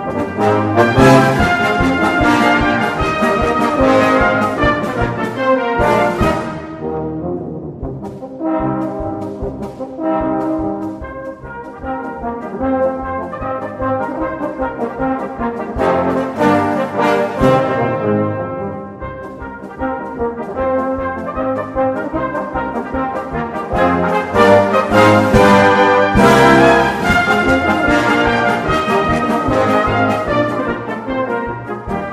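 Salvation Army brass band playing a march, full ensemble with percussion. There are cymbal crashes about six seconds in and again around sixteen seconds, and a softer, lighter passage between them.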